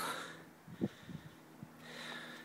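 A person breathing hard, out of breath after climbing a long flight of stairs.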